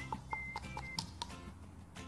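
A small metal spoon tapping lightly on the hard chocolate-coated shell of a pani puri, about four quick ticks a second that thin out after the first second, breaking a hole in the top of the shell. Quiet background music with steady tones plays under it.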